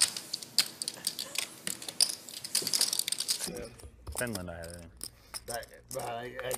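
Clay poker chips clicking as players riffle and handle them at the table: many quick, irregular clicks that stop about three and a half seconds in.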